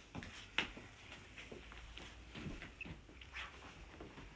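Faint rustling of cotton bedsheets being smoothed and folded down by hand, with a few small taps and knocks; the sharpest is about half a second in.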